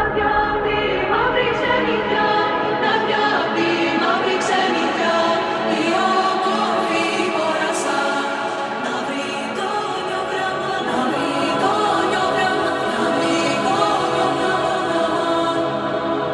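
Melodic house track in a breakdown: layered, choir-like vocals over synth chords, with the deep bass and kick dropped out. Light high percussion ticks come in after a second or two.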